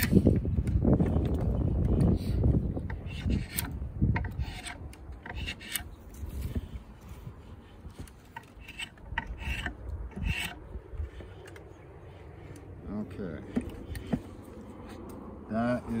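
Draw knife shaving a black locust timber peg clamped in a shave horse: a series of rasping cutting strokes as the blade peels shavings off the wood. The strokes are heavier for the first few seconds, then lighter.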